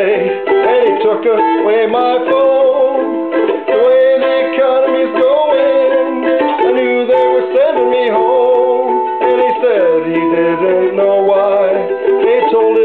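A man singing a slow blues while strumming chords on an eight-string, round-bodied mandolin.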